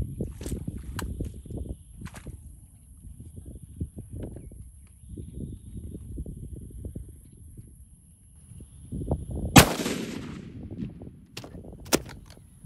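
A single shot from a .300 Winchester Magnum rifle about nine and a half seconds in, with a trailing echo. Before it there is a low rumble, and near the end come two sharp clicks.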